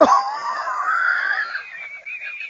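A sudden, high-pitched wavering scream that starts abruptly and fades out after about a second and a half.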